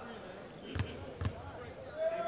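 A basketball bounced twice on a hardwood court by a player at the free-throw line: two dull thuds about half a second apart.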